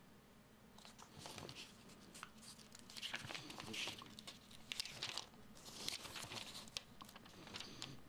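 Faint rustling of paper as the pages of a printed user manual are handled and turned: a few soft swishes with small clicks, starting about three seconds in.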